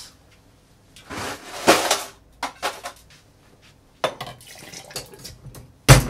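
Ice cubes clattering into a stainless-steel cocktail shaker tin in a loud burst about a second in, followed by light metal clinks and handling. Near the end comes one sharp knock as the second tin is fitted on to seal the shaker.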